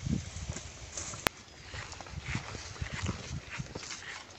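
Footsteps crunching and thudding unevenly on dry grass and leaf litter, with one sharp click about a second in.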